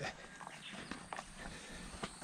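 Faint footsteps on sandy soil and grass, with irregular soft scuffs and clicks.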